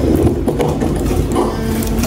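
Background music with steady held notes, and a brief word spoken early on.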